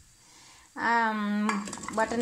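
Cubes of raw butternut squash tipped from a steel bowl into a pressure cooker, clinking against the metal in the last half second. Just before, a single drawn-out vowel from a voice.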